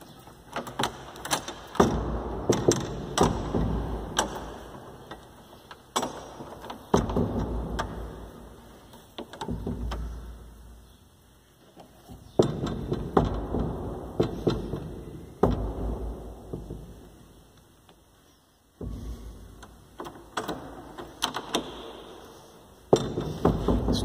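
Metal push bar and latch hardware of a wooden double door being pushed and rattled, giving repeated clunks, knocks and thumps in about four bouts with quieter lulls between; the door stays shut.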